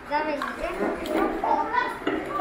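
Speech: a voice speaking Korean and giving instructions, with the steady hum of an electric fan underneath.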